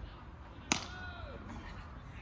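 A single sharp smack of a hard impact about two-thirds of a second in, followed by a short distant call from a voice.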